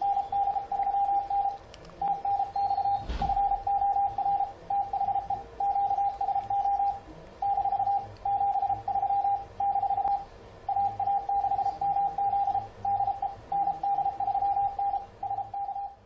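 Morse code (CW) from an ICOM IC-7300 keyed by FLDigi: a single steady tone switching on and off in dots and dashes. It is sending the closing of a contact, 'TNX FOR THE QSO' and 73.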